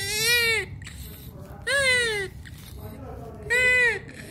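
Preterm newborn baby crying in short, high wails, three in all, each under a second long and about two seconds apart; the middle one falls in pitch at its end.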